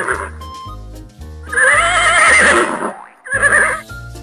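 A horse whinnying: a long, wavering neigh about a second and a half in, then a short one near the end, over background music with a steady beat.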